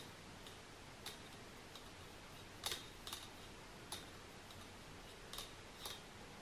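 Faint, irregular clicks of knitting needles being handled while stitches are cast on, about five in all, over quiet room tone.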